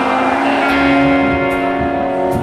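Live post-hardcore band music: electric guitars hold a sustained, ringing chord with little drumming under it.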